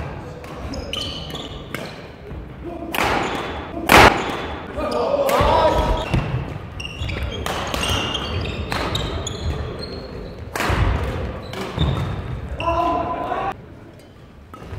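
Badminton doubles rally: rackets strike the shuttlecock in sharp cracks throughout, the loudest about four seconds in, with short high squeaks of shoes on the wooden court and players' shouts.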